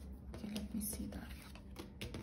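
A woman's voice, quiet and under her breath, with tarot cards sliding and being laid on a tabletop.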